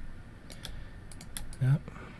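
Several irregular, sharp clicks of computer keyboard keys.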